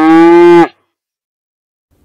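A dairy cow mooing once, loud, the call rising in pitch and then cut off sharply well under a second in.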